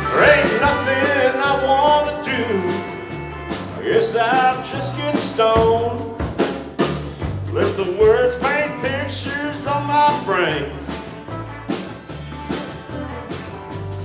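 Live country band playing an instrumental break: drums keep a steady beat under a walking bass line while a lead instrument plays a melody of sliding, bending notes.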